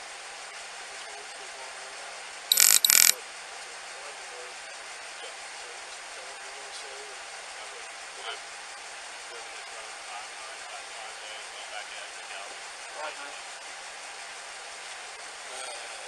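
Steady outdoor background hiss on a body camera's microphone, with faint distant voices. Two short, loud bursts of noise come close together about two and a half seconds in.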